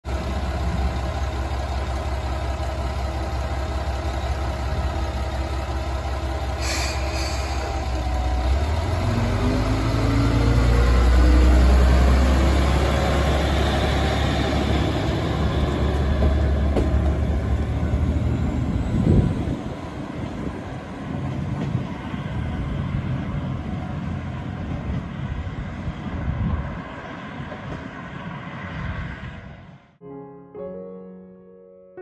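Mooka 14 diesel railcar running at the platform, then pulling away, its diesel engine note rising as it accelerates. The rumble is loudest a few seconds after it sets off, then drops off and fades as the railcar leaves.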